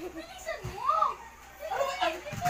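Children's voices at play, wordless calls and squeals rising and falling in pitch, with a single thump about two-thirds of a second in.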